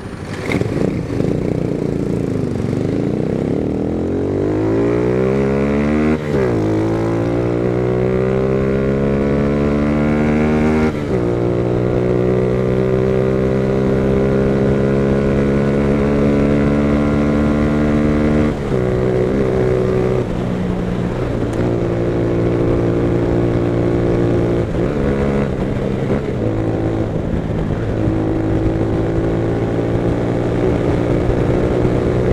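Motorcycle engine heard from the rider's seat, pulling away and accelerating up through the gears. Its pitch rises and falls back at upshifts about 6 and 11 seconds in, then holds at a steady cruise, with short throttle lifts later on.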